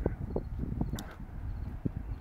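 Outdoor wind rumbling low on the microphone, with a few faint, sharp clicks from the camera being handled while walking.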